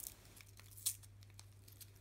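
Faint crinkling and tearing of plastic sweet wrappers and a plastic carrier bag handled by fingers, a few short crackles about a second in and again shortly after.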